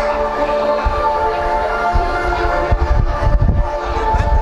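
Music with long held chords played through a hall's loudspeakers. Irregular low thuds and rumble come in during the second half.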